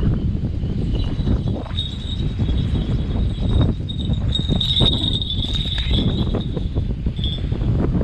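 Small falconry bells on a Harris hawk tinkling on and off as the bird moves and flies, loudest about halfway through, over a constant low rumble of wind and handling on the microphone.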